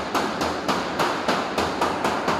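Rapid, evenly paced hammer blows on the sheet-metal cladding of a large pipe elbow, about three or four a second, each with a short metallic ring.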